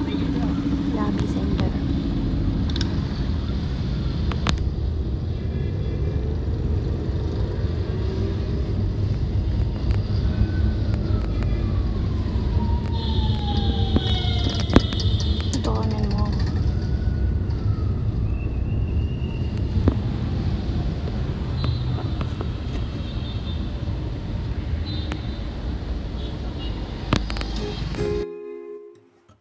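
Auto-rickshaw engine running with a steady low rumble, heard from inside the open cab as it moves through city traffic. A few pitched traffic sounds cut across it near the middle, including a falling tone and a short burst of high, horn-like tones.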